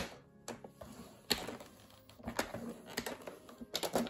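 A few sharp plastic clicks and light scrapes from a paper trimmer and the stiff cardstock being handled on it, just after a fold line has been scored. The clicks are scattered, with the loudest one at the very start and a quick cluster near the end.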